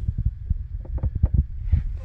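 Handling noise and wind on a phone microphone as the phone is moved about: a low irregular rumble broken by many small knocks and bumps.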